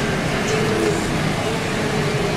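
A large herd of wildebeest crossing a river: many overlapping grunting calls over a steady wash of splashing water.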